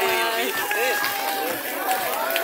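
Voices of people talking nearby, in short broken phrases over a steady background wash of outdoor noise.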